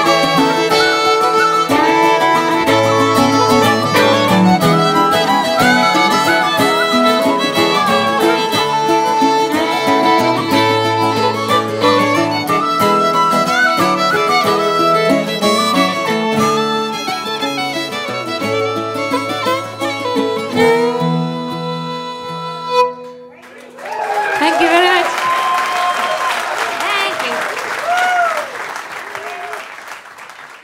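Irish traditional band playing live, fiddle-led with plucked strings and bass, through an instrumental close to a final note about 23 seconds in. Audience applause with cheers follows and fades near the end.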